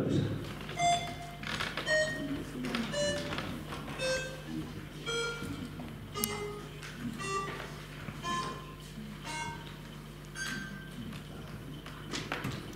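The electronic voting system's signal sounds during a vote. It is a slow sequence of single electronic notes, about one a second and at changing pitches, over a steady low hum, with one click about six seconds in.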